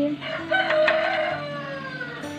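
A rooster crowing: one long drawn-out call starting about half a second in, falling away near the end.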